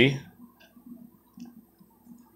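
A few faint, short clicks and taps of handling: a baseball card in a rigid plastic toploader being moved about.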